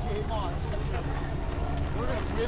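Indistinct voices of runners and spectators, with a few short snatches of speech, over a steady low rumble.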